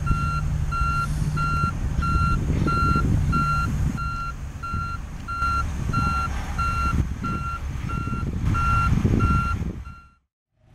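A heavy machine's reversing alarm beeping at an even pace, about three beeps every two seconds, over the steady rumble of diesel engines. This is the sound of machinery backing up on an earthworks site.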